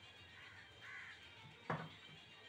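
Bird calls: a faint call about a second in, then a louder, harsh call near the end.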